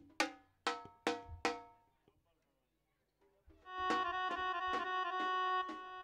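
Live band music: four ringing drum strikes, a sudden gap of silence about two seconds in, then a held electronic keyboard note with a violin-like tone over light drum taps.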